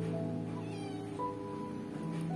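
Soft background music of held keyboard-like tones, with a new note coming in just past a second. A faint, brief high falling sound passes under a second in.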